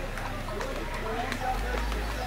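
Footsteps walking along a street outdoors, with faint voices in the background.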